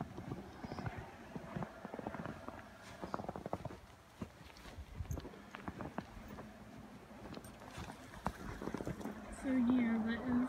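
Footsteps in fresh snow: an uneven run of short crunches as someone walks. A man's voice starts near the end.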